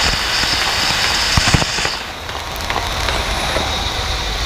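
Stage spark fountain hissing steadily, with a couple of sharp crackles, then cutting off about two seconds in as the sparks die; a low rumble of the venue continues underneath.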